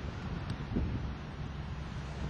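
Wind buffeting an outdoor camcorder microphone: a steady low rumble, with a faint click about half a second in.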